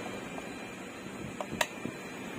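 A few small sharp clicks as multimeter test leads and probe tips are handled, over faint steady room noise.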